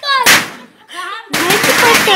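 A young boy shouting in a loud, dramatic voice, his pitch swooping and breaking into harsh bursts. It drops off briefly in the middle, then comes back loud.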